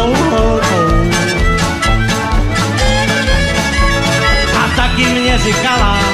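Live country band playing a song, with a steady, even beat.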